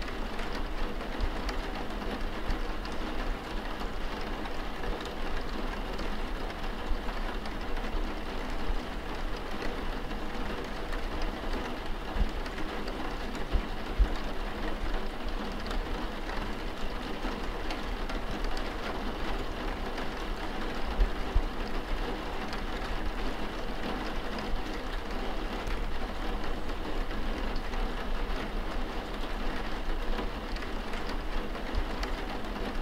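Steady rain pouring, an even rushing hiss with a low rumble beneath it.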